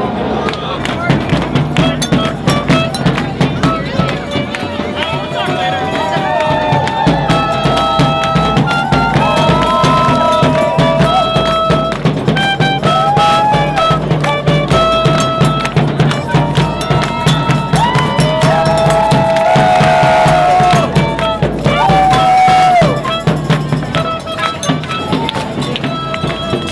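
A clarinet played by a marcher in a street band, a melody of held notes and slides over quick drum strokes, with crowd noise and voices around it.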